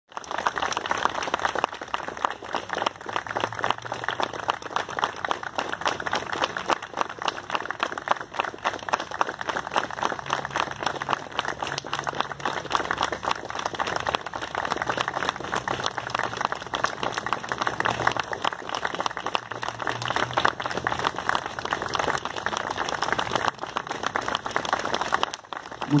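A group of people clapping steadily and continuously, in a long sustained round of applause that stops just before the end.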